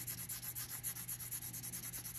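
Colored pencil shading on paper: quick, even back-and-forth strokes laid close together, making a steady scratchy rubbing.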